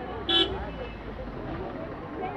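A vehicle horn gives one short toot about a third of a second in, the loudest sound here, over steady street traffic noise and voices of people talking.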